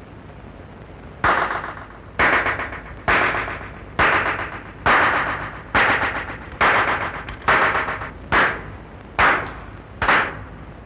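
A bell struck at a slow, even pace, about one stroke a second, ten strokes starting about a second in, each ringing out and dying away before the next.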